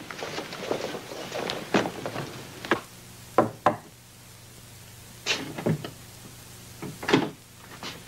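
Knuckles knocking on a wooden door: two sharp raps about three and a half seconds in, with a few lighter knocks and door noises before and after.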